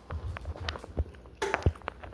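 A man chewing food close to a phone microphone, with irregular clicks and low thumps.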